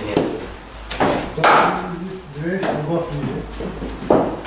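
Cricket ball bowled and played in an indoor net: a sharp knock of bat on ball about a second in, followed closely by a louder thump. Men's voices follow.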